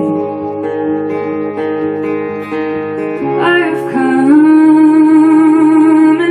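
Acoustic guitar played with a capo, ringing chords, then about three seconds in a woman's voice comes in and holds one long sung note, wavering slightly.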